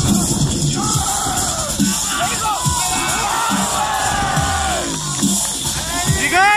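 Music with a steady beat, over crowd voices.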